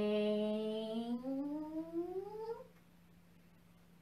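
A woman's voice intoning a long, drawn-out "hang", the breathing cue of a qigong exercise, its pitch rising steadily for about two and a half seconds before it stops.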